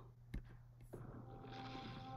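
A single sharp click, then faint film-trailer audio starting about a second in: a steady low musical drone, joined near the end by a muffled explosion with a rush of blowing sand.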